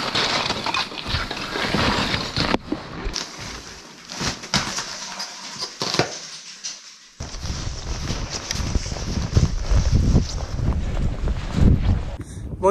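Crunching and scraping of boots on broken glacier ice and snow, with clothing rustle, in a run of short crackling strokes. From about seven seconds in, a low, steady rumble on the microphone takes over.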